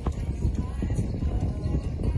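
Music playing, with the hoofbeats of a horse moving on a sand arena footing.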